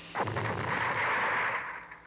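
Cartoon sound effect of a spaceship's thrusters during touchdown: a sudden blast of rushing noise that holds for over a second, then fades out near the end.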